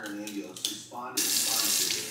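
A kitchen faucet is turned on about a second in, and water runs steadily into the sink over a bunch of asparagus being rinsed.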